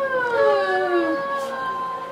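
Two long, drawn-out wails that overlap: the first slides slowly down in pitch and fades about a second in, while the second starts about half a second in and holds one pitch.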